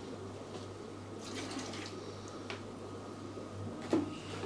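Fish and water being tipped from a plastic container into an aquarium: faint trickling and small splashes in the tank water, over a steady low hum.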